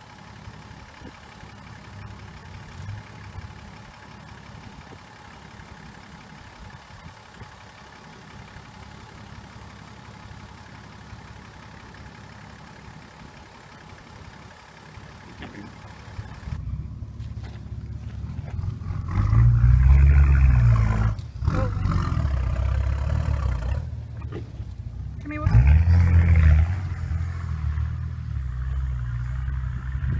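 Four-wheel-drive engine low and steady at first, then louder as a 4WD climbs a rocky track, revving up and back down twice, about twenty and twenty-six seconds in.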